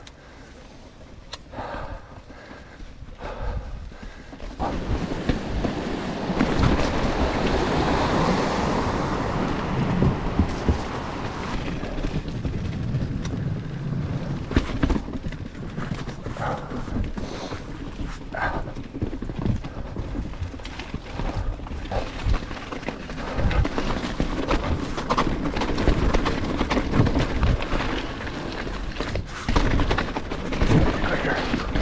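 Chromag Rootdown steel hardtail mountain bike descending a rough trail: tyres rolling over dirt and roots, with the frame and drivetrain rattling and many quick knocks from bumps. Fairly quiet for the first few seconds, then louder and busier from about four seconds in as the speed picks up.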